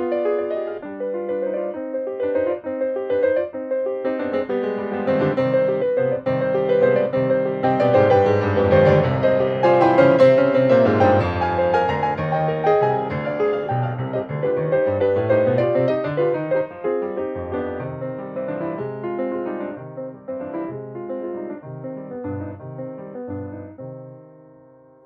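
Solo piano music played on a Kawai piano, a dense passage of notes and chords that swells to its loudest about halfway through, then grows gradually quieter towards the end.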